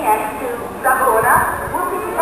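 A station public-address announcement: a voice speaking over the platform loudspeakers.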